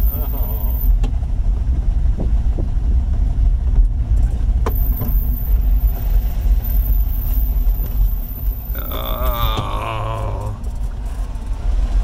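Small Fiat car's engine and road rumble heard from inside the cabin, driving slowly: a steady low rumble. About nine seconds in, a short wordless voice rises over it for a second or two.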